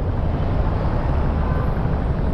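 Motor-vehicle engines running in slow traffic: a steady low rumble with a hiss of road and air noise over it.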